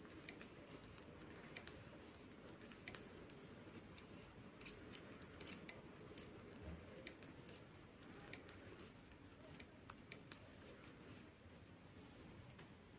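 Faint, irregular clicking of metal knitting needles as stitches are worked.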